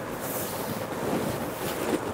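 Thin dupatta fabric rustling as it is lifted and spread out by hand, a steady soft swishing noise.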